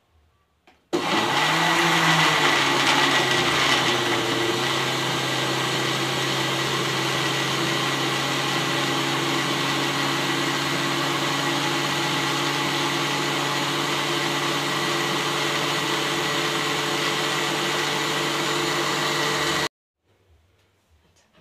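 Electric countertop blender running as it blends banana and avocado with milk into a smoothie. It starts abruptly about a second in and is a little louder for the first few seconds while it breaks up the fruit chunks. It then settles to a steady whir and cuts off suddenly just before the end.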